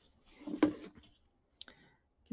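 Double-curved appliqué scissors snipping faux-leather appliqué fabric close to the stitching: one sharp snip about a third of the way in, and a small click near the end.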